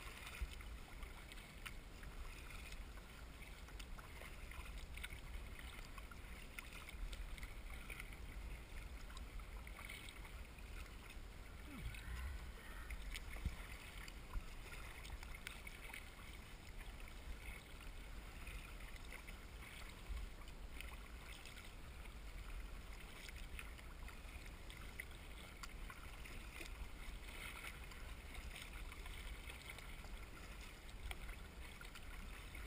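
Choppy water splashing and lapping against the hull of a narrow paddle craft under way, with a steady low rumble of wind on the microphone.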